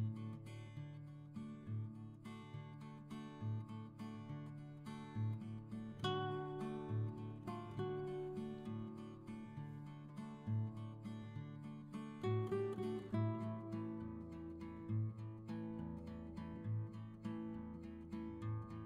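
Background music led by acoustic guitar, plucked and strummed notes over a steady pulsing bass line.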